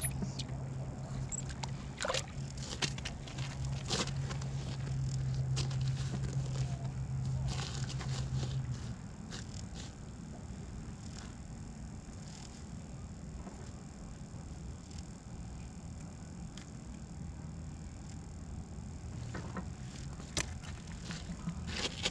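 A steady low motor hum, strong for about the first nine seconds and then fainter, with a few scattered sharp clicks.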